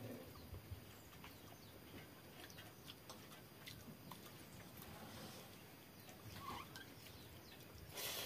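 Near silence: faint small clicks of fingers on a steel plate and a soft swish of a hand in a steel bowl of fermented rice water, with a louder wet mouthful of rice at the very end.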